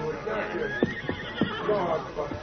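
A horse whinnying, a wavering cry that rises and falls, recorded as a radio-drama sound effect, as the last of an orchestral music bridge fades out at the start.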